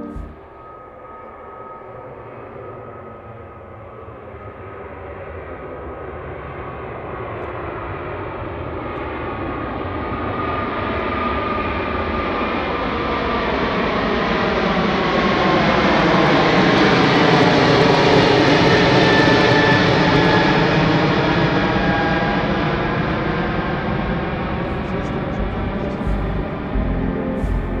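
Twin-engine jet airliner climbing out after takeoff and passing overhead. The jet noise builds steadily, is loudest about two-thirds of the way through as the aircraft passes above, with sweeping tones, then begins to fade as it flies away.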